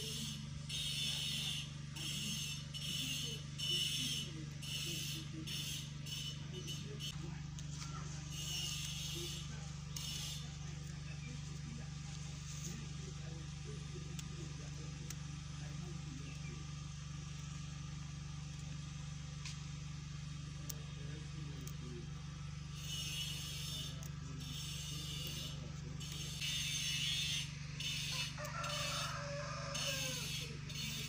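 Rustling and snapping of leafy vegetable stems and leaves as they are stripped by hand, in short bursts through the first several seconds and again near the end, over a steady low hum.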